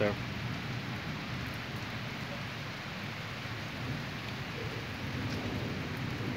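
Torrential rain falling steadily: an even, unbroken hiss of a downpour.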